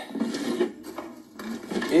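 Small metal medals clinking and jingling as they are picked out from a desk, with some rustling.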